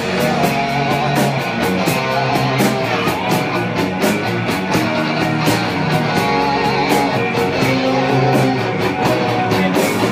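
Live hard rock band playing an instrumental passage with no vocals: a distorted electric guitar, a Musil Vision Deluxe through Marshall amplifiers, plays sustained lead notes with wide vibrato over bass and drums with steady cymbal hits.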